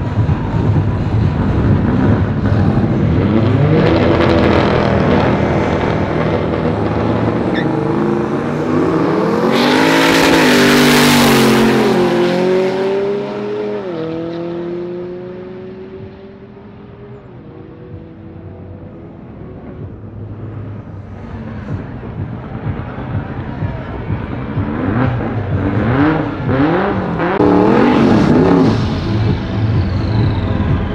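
Drag-racing cars launching and accelerating hard down a quarter-mile strip: engines rev up in pitch, peak very loud with a rushing hiss, then shift up several times, the pitch dropping at each gear change as the cars pull away and fade. Near the end another car revs hard again and again during a tyre-smoking burnout.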